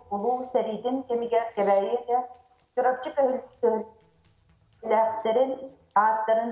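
Speech only: a person talking in short phrases, with a pause of about a second after the middle.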